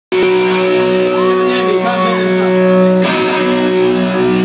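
Amplified electric guitars ringing out a loud, steady held chord in a live rock band setting, with a short raised voice about a second in.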